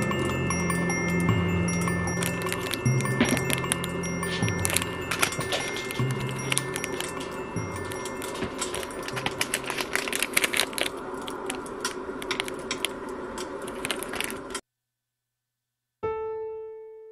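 Soft background music under close handling noise: quick clicks and crinkles from earrings on a card in a clear plastic bag being turned in the hands. Everything cuts off abruptly about a second and a half before the end.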